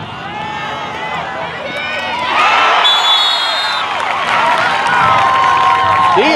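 Football spectators shouting and cheering during a play, the crowd swelling louder about two seconds in. A shrill whistle sounds for under a second around the middle, and a long held yell comes near the end.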